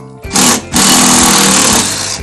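Cordless drill driver running in two bursts: a short one near the start, then a longer one of about a second that stops just before the end.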